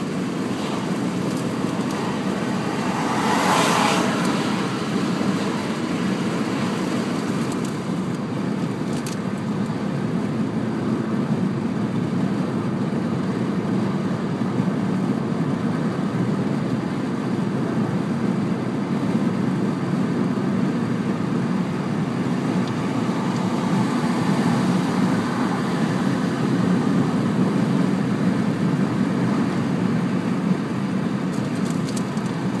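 Steady road and tyre noise with engine hum inside a car cabin at motorway speed, with a brief louder swell about three to four seconds in.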